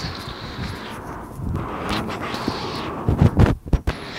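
Wind rumbling on a handheld phone's microphone, with footsteps on wet pavement. A few loud low thumps come near the end.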